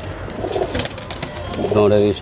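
Teddy pigeon cooing in a wire cage, with a low, wavering coo starting near the end.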